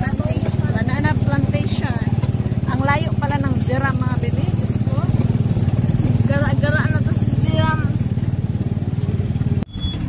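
Engine of a moving vehicle running with a steady low drone, heard from inside it, with people talking over it; the sound breaks off just before the end.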